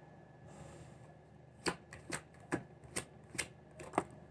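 A deck of tarot cards being shuffled by hand. After about a second and a half comes a run of soft, quick, irregular clicks as the cards slip and snap against one another.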